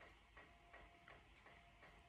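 Near silence: room tone with a faint, regular ticking, about three ticks a second.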